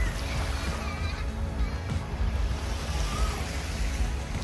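Background music over the wash of small waves on a sandy beach, with wind rumbling on the microphone in gusts.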